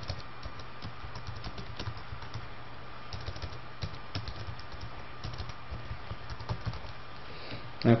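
Computer keyboard typing: irregular keystroke clicks, some in quick runs, over a steady low hum.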